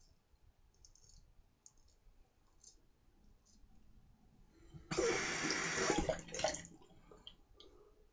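Faint short scrapes of a straight razor through lathered stubble, about one a second. About five seconds in, a tap runs into a sink for about a second and a half, louder than anything else.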